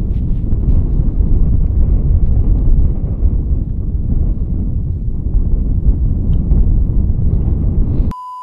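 Wind buffeting the camera microphone in a strong, gusty breeze across an open snowy field: a loud, rough rumble that swells and dips.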